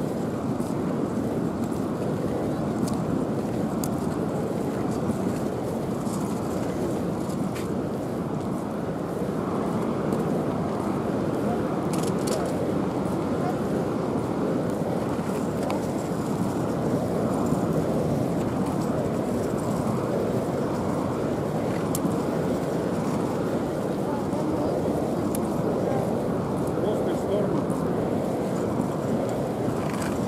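Steady murmur of many voices, with no single speaker standing out.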